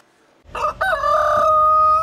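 Rooster crowing: one long cock-a-doodle-doo that starts about half a second in and ends on a long held note.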